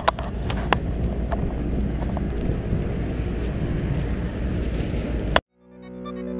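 Wind blowing across a camera microphone outdoors: a steady rumbling noise with a few sharp clicks in the first second or so. The noise cuts off abruptly near the end, and music begins to fade in.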